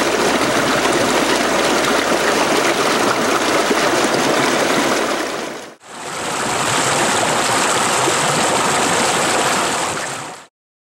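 Steady rush of a rocky mountain stream flowing over stones. It drops out briefly just before six seconds in and resumes as hissier whitewater rushing past rocks, with a thin high tone above it.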